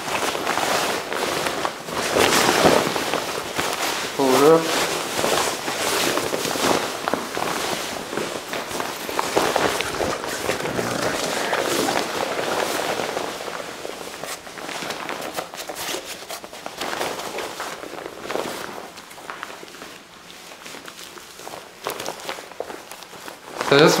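Stiff waterproof nylon shell of a Level Six Emperor drysuit rustling and crinkling as it is pulled on and worked up over the arms and shoulders, in quick scrunching bursts that thin out in the second half. A short vocal grunt about four seconds in.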